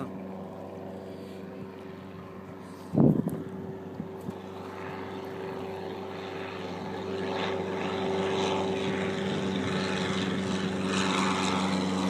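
Floatplane's propeller engine at full takeoff power, a steady drone that grows louder over the second half as the plane lifts off and climbs toward the boat. A single loud thump comes about three seconds in.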